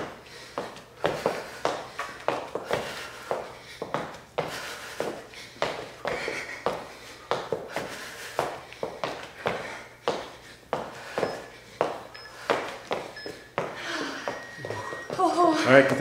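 Quick, evenly spaced footfalls of two people doing a boxer-shuffle and high-knee switch-foot cardio drill on a hard floor.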